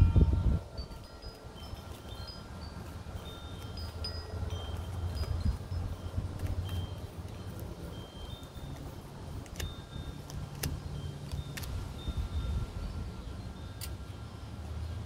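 Wind chimes tinkling faintly in scattered high notes over a low steady rumble, while a deck of tarot cards is shuffled by hand; a few sharp card clicks come in the second half.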